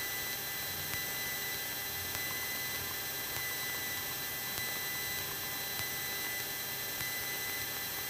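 Steady hiss with a constant electrical hum from the Cessna 172's cockpit intercom feed while the plane taxis, its engine kept low beneath the hiss.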